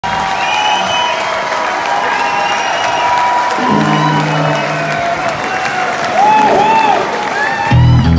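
Live rock band opening a song: a held note with a few low bass notes in the middle, under a crowd cheering and whistling. The full band, with drums and bass, comes in loudly just before the end.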